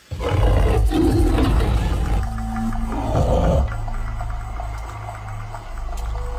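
A big cat's deep roar that bursts in suddenly over music, with a low rumble running underneath.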